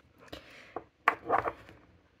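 A few light clicks and knocks of small objects handled on a desk, with a louder cluster of them about a second in.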